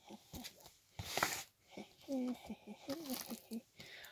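A cardboard parcel and its packaging being handled, with a short rustling burst about a second in, followed by quiet mumbled speech.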